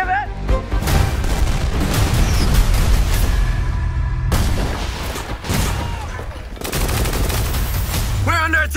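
Battle sound effects of gunfire and explosions over trailer music, with a sudden blast about halfway through and another a couple of seconds later.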